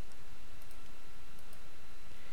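A few faint, sharp computer mouse clicks over a steady low hum of background noise.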